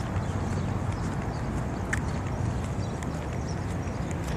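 Steady traffic rumble from a wide multi-lane road, with a few sharp, irregular clicks, the clearest about halfway through.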